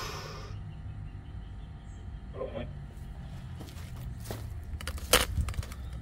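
Spirit box radio scanning: a low steady hum broken by scattered static crackles and clicks, with the sharpest cluster about five seconds in.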